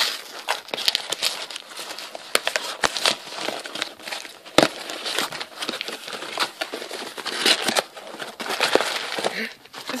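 Plastic packaging crinkling and rustling in irregular bursts of sharp crackles as a parcel is unwrapped by hand.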